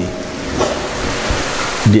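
A page of a paper book being turned by hand, a rustle of paper over a steady hiss.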